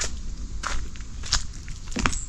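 Footsteps of people walking at a steady pace, four short steps about two-thirds of a second apart.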